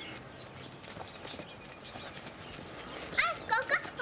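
Faint scattered rustling and ticking, then about three seconds in, children's high-pitched voices calling out in quick, wavering cries.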